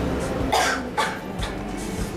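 A girl coughing twice, about half a second apart, over faint background music.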